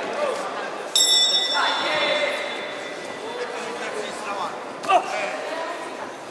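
Boxing ring bell struck once about a second in, ringing on and fading over a couple of seconds as the round starts, heard over voices in a reverberant hall.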